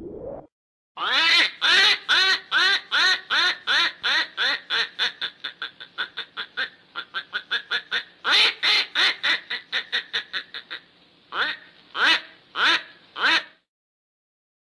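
A duck quacking in a long, fast run of quacks, about three to four a second, fainter in the middle and loud again later, then four separate quacks near the end.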